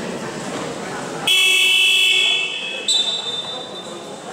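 Electronic game buzzer of a basketball scoreboard, sounding loudly about a second in for about a second and a half, then a thinner, higher tone carrying on until near the end, over the murmur of voices in a gym.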